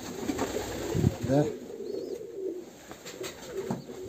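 Domestic pigeons cooing, several low warbling coos repeating and overlapping.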